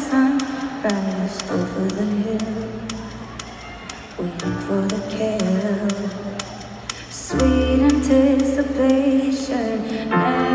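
A woman singing sustained notes over instrumental accompaniment. The music drops in level through the middle and swells back about seven seconds in.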